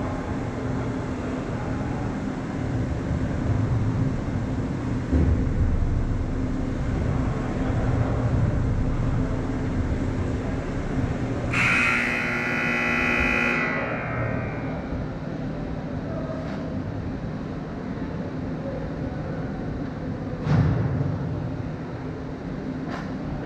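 Ice hockey rink ambience: a steady low hum under distant play on the ice. Just past halfway there is a loud scraping hiss lasting about two seconds, and a single knock near the end.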